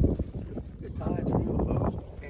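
Wind buffeting the microphone on an open boat, a low rumble that is loudest in a gust right at the start, with a faint voice about a second in.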